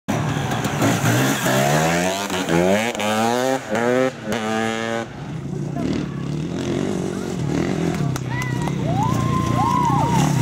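Off-road motorcycle engine accelerating hard through the gears: its pitch climbs, drops back at each upshift, and climbs again five times in quick succession, then settles into a lower, rougher run.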